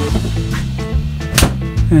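Background music with steady held notes, and one sharp knock about one and a half seconds in.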